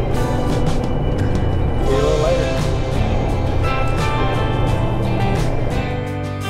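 Background music with a melody, laid over the steady low road and engine rumble of a pickup truck heard from inside its cab.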